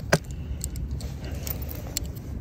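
Handling noise from a phone being moved: one sharp click just after the start, then a few fainter clicks, over a steady low rumble.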